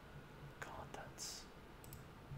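A man whispering softly under his breath, with a short sharp hiss of a sibilant about a second in and a couple of small clicks near the end.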